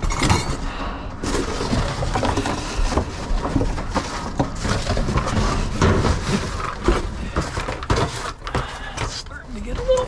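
Cardboard boxes and flattened cardboard sheets being shoved and shuffled around inside a metal dumpster: continuous rustling and scraping with many irregular knocks and thuds.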